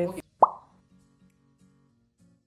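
A short, sharp rising "bloop" transition sound effect about half a second in, followed by faint background music with low notes.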